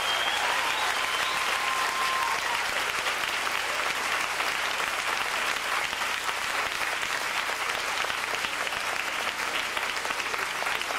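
Live audience applauding steadily at the close of a song, with a thin held tone over the first two seconds.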